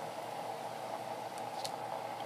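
Steady background hiss of room noise, with two faint light ticks about one and a half seconds in.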